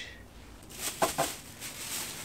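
Clear plastic bag crinkling as it is handled, starting under a second in.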